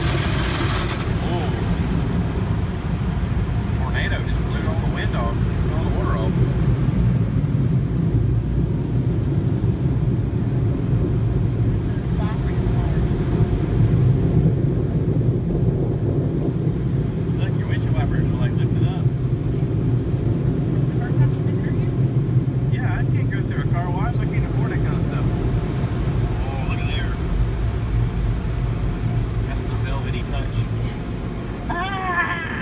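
Automatic tunnel car wash heard from inside the car's cabin: a steady, loud low rumble of the wash machinery, with a hissing spray of water hitting the windshield in the first second.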